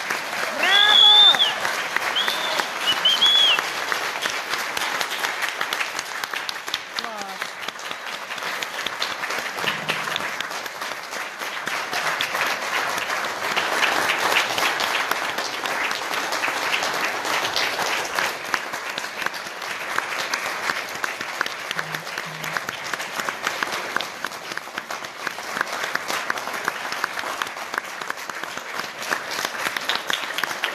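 Audience applauding steadily at the end of a concert performance, with a few high whooping shouts about one to three seconds in.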